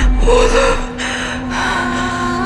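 A woman gasping: a sharp breathy intake with a brief voiced catch in the first second, then a second breath, over steady held tones of a dramatic music score. A deep low rumble fades out during the first second.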